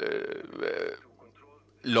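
A speaker's drawn-out, creaky hesitation sound of about a second, a vocal filler between words, then a short pause before speech resumes near the end.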